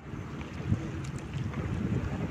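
Wind rumbling on the microphone outdoors at the waterside, a steady low noise with uneven gusts.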